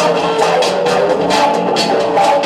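Loud breakbeat dance music with a steady drum beat and pitched instrument lines, played by a DJ over PA speakers.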